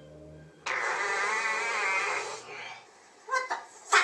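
A man's loud, wavering yell lasting about two seconds, followed by two short vocal sounds near the end.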